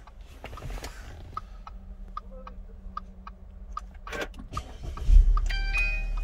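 Push-button start of a 2012 Audi A4 quattro petrol engine. A run of faint, even ticks comes first, then the engine catches about five seconds in with a sudden low rumble and settles into idle. Tones from the car's audio system begin near the end.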